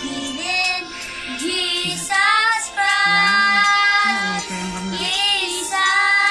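Two children singing a song together, with a long held note about halfway through.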